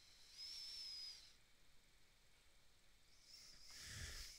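Near silence: faint hiss, with a thin, high-pitched whine lasting about a second near the start.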